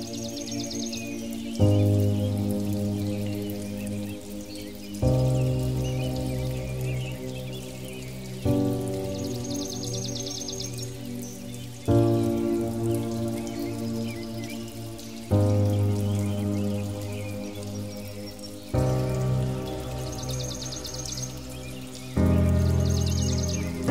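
Slow meditation music of soft sustained chords, each one starting sharply and fading away. A new chord comes about every three and a half seconds, with a water sound of falling drops beneath the music.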